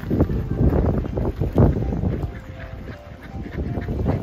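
A flock of waterfowl calling, short pitched calls from several birds, over a low rumble of wind on the microphone.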